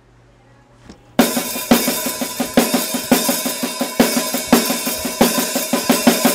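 A rock band with a drum kit starts playing suddenly about a second in, after a brief hush, with loud, steady drum hits about twice a second under the guitars.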